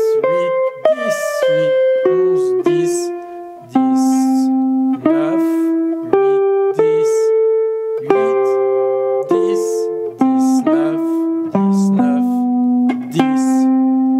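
Archtop jazz guitar playing a single-note solo phrase slowly, note by note, with a grace-note hammer-on. Each picked note rings for about half a second to a second.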